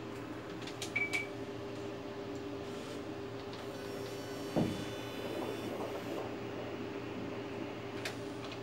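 Philips ultrasound scanner humming steadily, with a few clicks of its console keys and a short high beep about a second in, and a single dull thump about halfway through.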